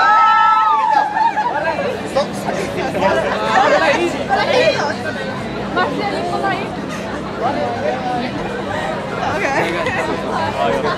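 Crowd chatter: many people talking at once, with a loud, held high-pitched call in the first second and a half and a steady low hum underneath.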